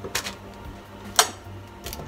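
Two sharp clicks about a second apart as a juicer's power plug is handled and pushed into a wall socket, over the steady low hum of a washing machine running.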